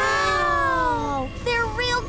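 Several children's voices in one long, drawn-out 'wow' of awe that falls in pitch, followed near the end by short, choppy higher vocal sounds.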